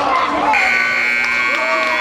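Arena scoreboard buzzer sounding a steady tone from about half a second in, marking the end of the game at 0:00, over voices.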